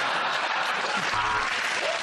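Studio audience applauding, a dense, steady clapping.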